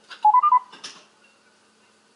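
2N Helios IP Vario intercom's loudspeaker playing a quick four-note electronic beep sequence, stepping up in pitch and then back down. A sharp click follows about a second in.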